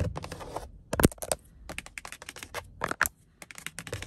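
Long acrylic fingernails scratching briskly across a car's grained door-panel trim for the first half second or so, then tapping it in a run of sharp, irregular clicks.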